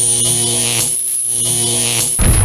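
Electronic logo-intro sound effect: a steady, buzzy electric hum held under a sustained high-pitched whine, dipping briefly about halfway through.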